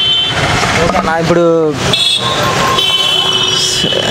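Steady roadside traffic noise, with a person's voice briefly in the middle and a thin, high, steady whine through the second half.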